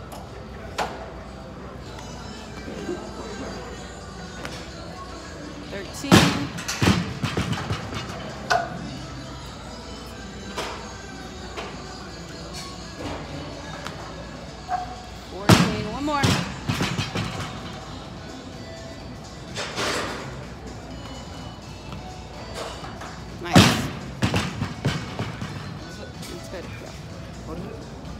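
A loaded barbell with bumper plates dropped onto a wooden lifting platform three times, roughly eight to nine seconds apart; each drop is a heavy thud followed by the plates bouncing and rattling to a stop. Gym music and distant voices run underneath.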